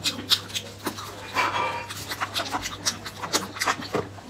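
Close-miked eating sounds: irregular wet clicks, smacks and chewing from the mouth, with a brief pitched tone about a second and a half in.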